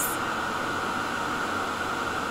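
Steady, even hiss of air like a fan or blower running, with no distinct events.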